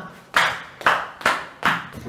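Four sharp hand claps, evenly spaced about two a second.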